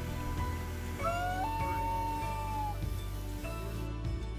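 A common loon's wail: one long call about a second in that starts lower, rises and then holds a steady note for over a second. It sounds over soft background music with low sustained tones.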